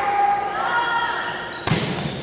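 A volleyball struck once with a sharp smack about one and a half seconds in, echoing briefly in the gym. Before it, players and spectators call out in drawn-out shouts.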